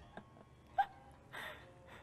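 Faint stifled laughter in a quiet room: a short high squeak of a laugh about a second in, then a brief breathy exhale.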